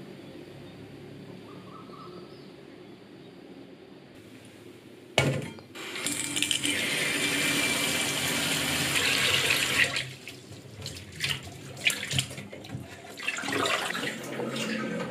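Tap water running onto raw shrimp in a stainless steel bowl: a quiet room hum, then the loud stream starts suddenly about five seconds in and runs for about five seconds before stopping. Scattered knocks and clinks of handling at the sink follow.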